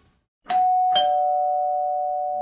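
Two-note ding-dong doorbell chime. A higher note is struck about half a second in, then a lower note half a second later, and both ring on.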